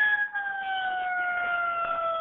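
An emergency vehicle siren heard over a 911 phone call recording, one long tone gliding slowly down in pitch.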